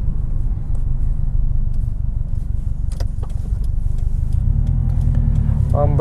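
Steady low rumble of engine and road noise inside the cabin of a 2016 Subaru WRX STI, a turbocharged flat-four, while it is driving.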